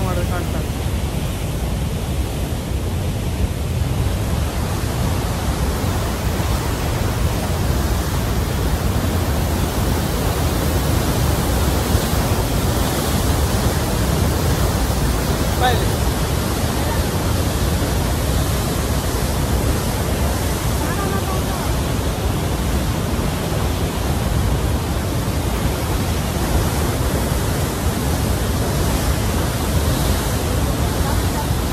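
Huka Falls: the Waikato River's white water pouring through a narrow rock channel, a loud, steady rush of water with a deep low end and no let-up.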